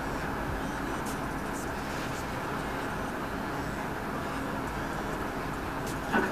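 Steady background noise with no distinct events, marked only by a couple of faint ticks, one about a second in and one near the end.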